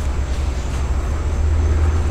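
A steady low rumble of background noise, slightly louder toward the end.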